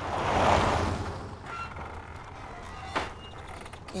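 A van driving past: a whoosh that swells and fades within the first second and a half, with a short click about three seconds in. Faint background music plays underneath.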